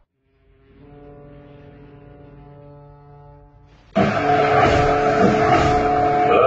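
Film soundtrack: after a brief silence, a faint, steady, horn-like drone with several held tones, then a sudden loud cut-in about four seconds in, a held tone over a dense wash of sound.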